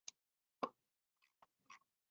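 Near silence broken by faint, irregular small clicks and pops, the strongest about half a second in.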